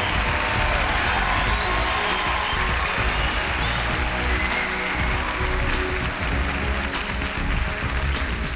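Stage show music playing, with an audience applauding over it.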